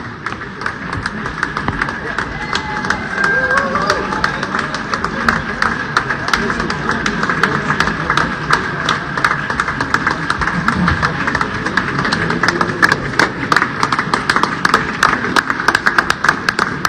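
Audience applauding, many hands clapping steadily, with voices chattering in the crowd underneath.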